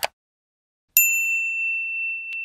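A bell-like ding sound effect: a single bright strike about a second in that rings on at one steady pitch and fades slowly. It accompanies the notification bell of a subscribe-button animation.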